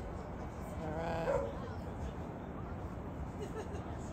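A single short cry, about half a second long, a little past a second in, over steady low background noise.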